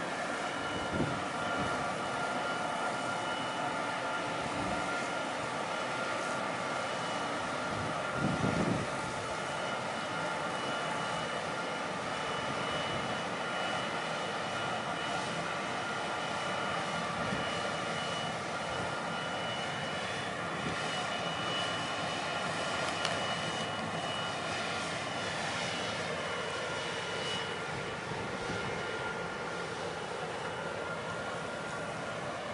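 Steady whine of a passing Cheng Kung-class frigate's gas turbines and machinery at close range, carrying several high steady tones. A short low thump comes about eight seconds in, and the pitch wavers and glides in the later seconds as the ship moves past.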